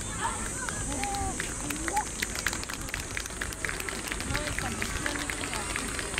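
Sparse, scattered hand clapping from a small outdoor audience, with brief snatches of people's voices and a steady high hiss underneath.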